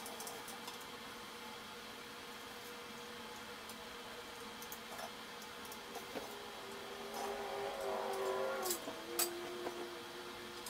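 Caulking gun squeezing a bead of silicone along a metal shower-door wall profile: quiet squeezing, a squeaky whine in the second half, and two sharp clicks from the gun near the end.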